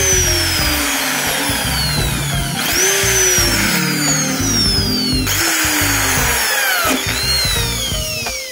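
Bosch electric drill boring through a blue plastic mop-head socket and handle, run in bursts: each time the motor starts high and its pitch slides down as the bit bites, starting again three times. Background music plays underneath.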